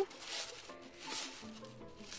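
Brown paper wrapping rustling and crinkling as it is unwrapped by hand, with a faint tune underneath.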